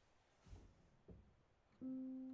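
Near silence with a couple of faint soft knocks, then near the end the first note of an upright piano sounds and rings on as the playing begins.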